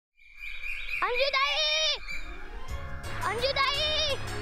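Bird calls: a long, wavering call about a second in and a second one near the end, with small birds chirping around them. Music with a low beat comes in during the second half.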